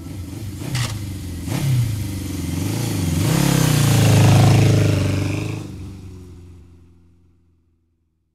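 Motorcycle engine revving, its pitch rising and falling, with two sharp clacks in the first two seconds. It swells to its loudest about four seconds in, then fades out.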